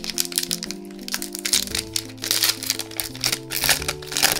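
Crinkling and crackling of a foil trading-card booster pack wrapper being handled and opened, loudest in the second half, over steady background music.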